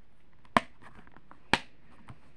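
Two sharp plastic clicks about a second apart, with a few faint ticks between, from a plastic DVD case being handled.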